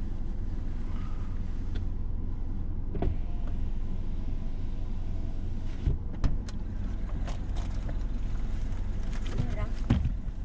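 Mercedes-Benz car idling while stationary, heard from inside the cabin as a steady low rumble, with a few short knocks about 3 and 6 seconds in and again at the end.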